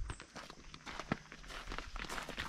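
Footsteps on an outdoor garden path, a loose run of short irregular steps, one louder step about a second in.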